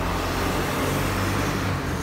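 Road traffic noise: a steady rush of passing vehicles with a low engine hum, swelling a little about a second in.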